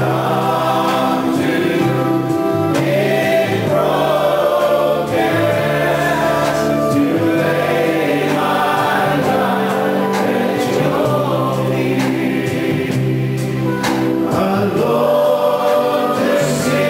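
A choir singing a gospel hymn, several voices together over a sustained low accompaniment.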